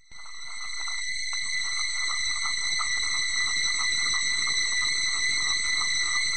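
Steady high-pitched sound made of several held tones with a fast, even flutter beneath. It fades in over about the first second and then holds at an even level.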